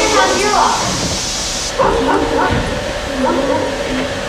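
A person imitating a dog in short whining and yipping sounds, over a steady hiss that stops abruptly about two seconds in.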